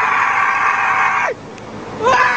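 A passenger's long, high-pitched scream, held steady for about a second and a half and dropping off near the end, over the steady drone of a light aircraft's cabin.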